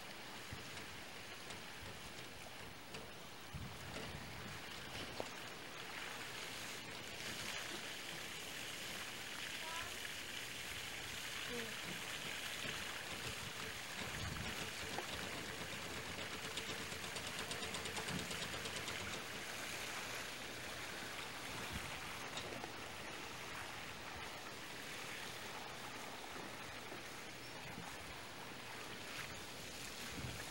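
Water spraying from the open end of a garden hose onto grass: a low, steady hiss.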